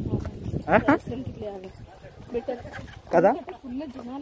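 Footsteps on a paved stairway, with a person's voice calling out loudly twice, once about a second in and again near the end.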